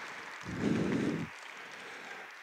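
Audience applause, light and even, with a short low voice sound about half a second in.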